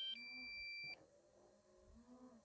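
Electronic alert beep from a drone's remote controller and app: a chord of steady tones that switches to a different chord once and cuts off about a second in.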